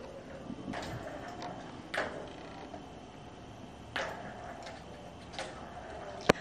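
Plastic balls rolling in the tracks of a three-tier plastic ball-track cat toy as a kitten bats at them, with four sharp clacks of ball against track, loudest about two and four seconds in.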